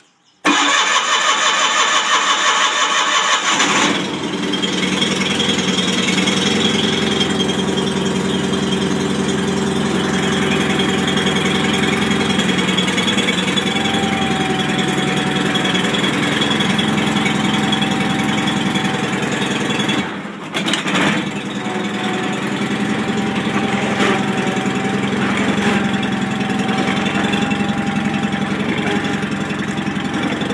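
John Deere 318 garden tractor's Onan flat-twin engine being cold-started after sitting three weeks: the starter cranks for about three and a half seconds, then the engine catches and runs steadily, with a brief dip about twenty seconds in.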